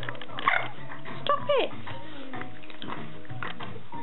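A schnauzer's short, displeased vocal sounds at being groomed: a brief one about half a second in, then two quick calls that slide down in pitch around a second and a half in.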